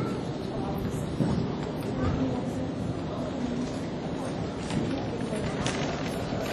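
Hoofbeats of a jumper mare cantering on arena dirt, with a few sharper knocks, under steady indoor arena noise and distant voices.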